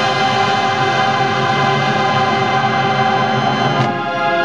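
Marching band playing a loud, sustained chord that holds steady and changes near the end.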